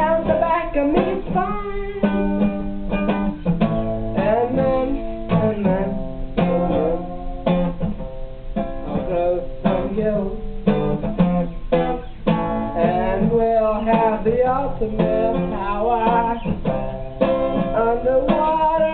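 Acoustic guitar strummed steadily, with a voice singing over it.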